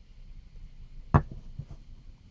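A single sharp knock about a second in, as a hammer with a cord-wound handle is set down on a workbench, followed by a few faint handling knocks.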